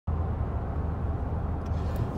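Steady low drone of engine and road noise heard inside the cab of a 2019 Toyota Tundra pickup being driven.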